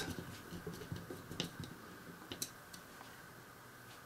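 Small, sharp clicks and ticks of a precision screwdriver turning a tiny screw into a plastic model part, the clearest about one and a half and two and a half seconds in, then quiet room noise.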